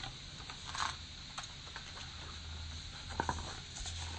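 Faint rustling and small clicks of paper as a picture book is handled and its page turned, over a low steady hum.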